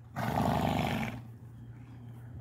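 A horse snorting, one rough, fluttering blow of about a second, then quiet.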